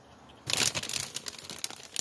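Plastic bags of frozen food crinkling and rustling as a hand moves them around. It starts about half a second in with a loud burst of crackling, then continues irregularly.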